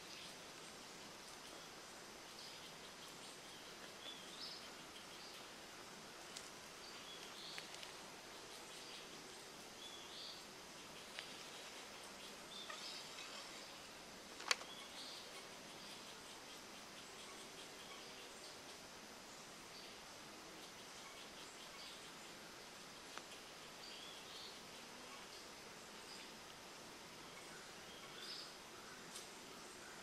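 Quiet woodland morning ambience: short high bird chirps every second or two over a faint steady drone of insects, with one sharp click about halfway through.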